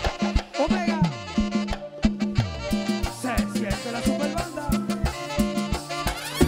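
A live merengue (mambo) band playing a fast, driving groove: tambora and conga strokes over a bass line, with a brass section of saxophones, trumpets and trombones.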